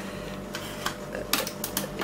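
A few sharp metal clicks and rattles from a stainless steel lever-action chip cutter being handled, most of them in a short cluster about a second and a half in; the cutter has just broken. A steady low hum runs underneath.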